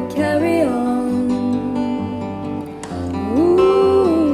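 Two acoustic guitars strumming, with women's wordless singing holding long notes over them; the voice line bends early on and climbs to a higher held note a little past three seconds in.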